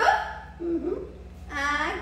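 A few short wordless vocal sounds from a person, each brief with a wavering pitch.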